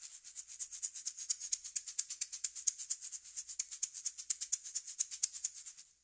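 Sampled shaker playing a fast, even groove of short strokes from 8Dio's Aura Studio Percussion library. The loop is a recorded shaker groove, sliced and layered by velocity. It builds in loudness over the first second, then keeps a steady pulsing rhythm.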